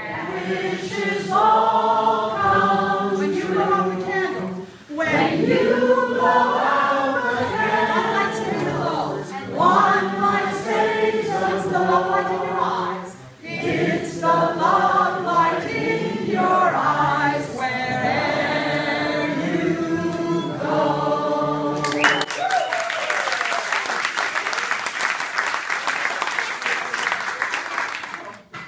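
A group of voices singing together in held notes, then applause breaking out about 22 seconds in.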